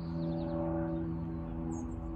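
Small birds giving a few short high chirps, near the start and again near the end, over a steady low hum.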